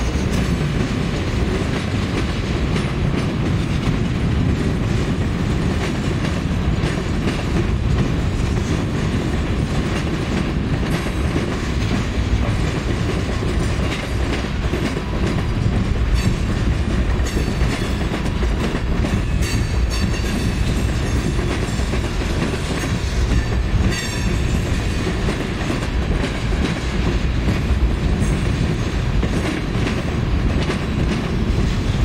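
Freight train of tank cars and boxcars rolling past close by: a steady loud rumble of steel wheels with a rhythmic clickety-clack over the rail joints, and a few faint high squeaks near the middle.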